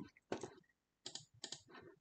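A handful of faint, short clicks scattered across the two seconds, from operating a computer.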